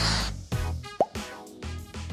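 Cartoon sound effect of a bubblegum bubble popping: a short, sharp pitched plop about a second in, over a fading music jingle.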